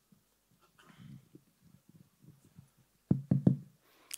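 Handheld microphone tapped three times in quick succession, sharp thumps about three seconds in, as it is checked before use. Faint low handling noise comes before the taps.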